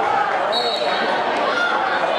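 Basketball being dribbled on a hardwood gym floor over steady crowd chatter echoing in the gym, with a brief high squeak about half a second in.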